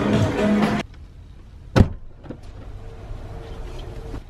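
Shop background music with chatter that cuts off under a second in. Then the quiet of a car interior, with one sharp thump about two seconds in, a car door shutting, over a faint low rumble.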